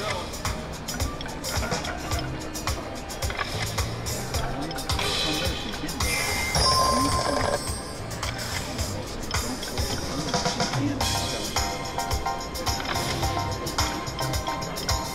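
Press Your Luck video slot machine spinning its reels, playing its electronic music, jingles and clicking spin effects without a pause.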